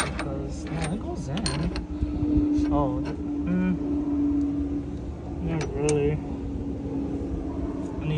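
Light metallic clicks and taps of steel suspension parts being handled and fitted by hand, a rear suspension link's bracket going onto the knuckle, over a steady low hum with muffled voices in the background.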